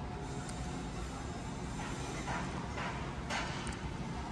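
Steady outdoor background noise with faint, distant voices briefly in the middle.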